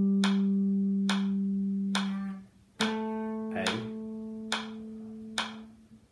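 Clean electric guitar, a Les Paul-style solid-body, playing two slow held notes of an ascending C Lydian scale, the second a step higher and entering about three seconds in, over a metronome ticking about once every 0.9 seconds.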